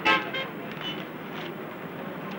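Street traffic noise with a few short car horn toots, one at the start and fainter ones within the first second.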